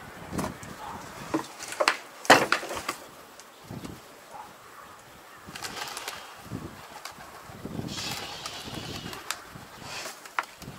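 Birds calling outdoors, their chirps clearest in the second half, with a few sharp knocks in the first three seconds, the loudest a little over two seconds in.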